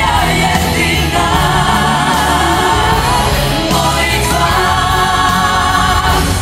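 Live pop ballad: a female lead singer belting over instrumental backing and a group of women backing singers, holding a long note together for the last couple of seconds.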